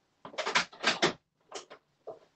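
Several short knocks and clatters in three quick groups, kitchen things being handled off to one side, with the knock of a door or cupboard.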